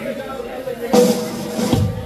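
Drum kit struck twice: a sharp hit about a second in and a deeper, bass-heavy hit near the end, over low background voices.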